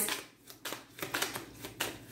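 A hand shuffling a small stack of cards, making a rapid series of light card clicks and flicks, about ten over a second and a half.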